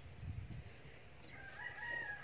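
A rooster crowing: one long call that begins a little past halfway and is still going at the end, after a brief low rumble at the start.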